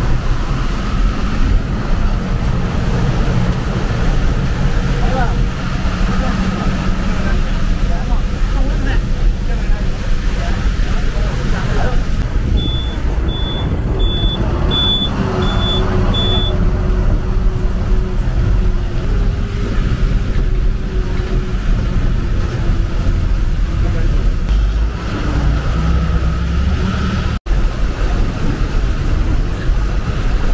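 A KSRTC bus running on the road, heard from inside the passenger cabin as a steady engine and road rumble. Six short high beeps come a little before the middle, and the sound cuts out for an instant near the end.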